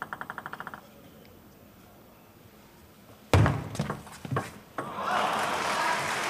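A table tennis ball ticking in a quick run of small bounces at the start. Then, about three seconds in, a short rally of sharp ball strikes on bat and table, about five hits. Crowd applause and cheering rise near the end as the point is won.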